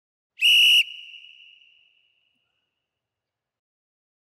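A boxing interval timer's warning signal: one short, high, steady whistle tone about half a second long, followed by a ringing tail that fades over about a second. It marks ten seconds left of the one-minute rest before the next round.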